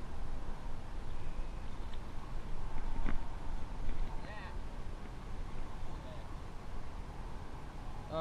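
Steady low rumble of wind on the microphone, with a single click about three seconds in and a brief faint voice just after four seconds.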